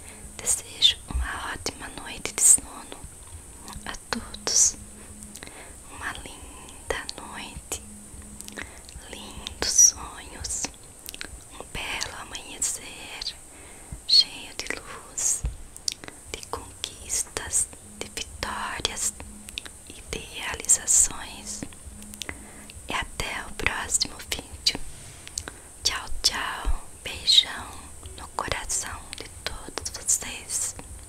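Fingers massaging and raking through a mannequin head's wig hair close to a sensitive microphone: an irregular stream of short, crackly rustling and scratching strokes.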